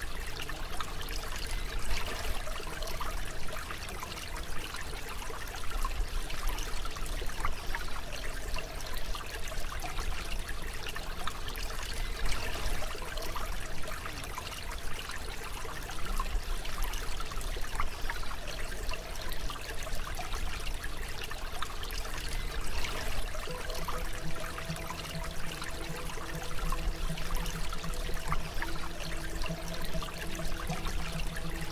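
Running water, like a trickling stream, a steady crackly rush. Faint steady tones sit underneath, and a lower steady drone joins about three-quarters of the way through.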